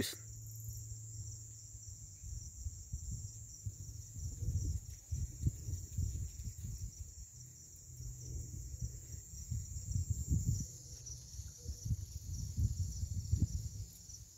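A steady, high-pitched night chorus of crickets, with an uneven low rumble on the microphone underneath.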